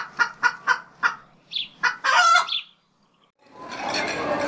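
Chicken clucking in a run of short calls, then a rooster crowing once about two seconds in.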